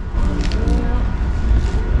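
Biting into and chewing a piece of crusty bread close to the microphone, with a couple of short crunches, over a steady low rumble.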